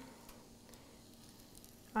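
Faint sizzling of liege waffle dough on the hot plate of an open electric waffle iron.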